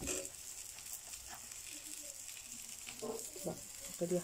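Faint, steady sizzle of stuffed flatbread dough cooking in a nonstick frying pan, with a brief rustle right at the start.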